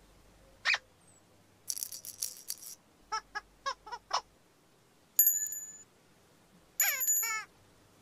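Cartoon-style sound effects: a short rattle of clicks, then a quick run of about six short high squeaks, then two bell-like dings that ring on, the second joined by falling squeaky calls.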